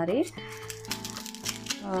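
Background music with a few held notes, with a woman's voice briefly at the start and near the end. Under it, light crinkling and scraping as the dry skin of an onion is peeled off with a knife.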